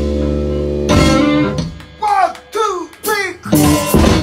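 Rock band playing, guitar to the fore: a held chord rings for about a second, then three short falling slides follow one another, and the full band with drums crashes back in just before the end.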